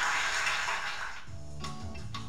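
Studio audience applauding, which gives way about a second in to a music sting with a bass line and regular percussive knocks.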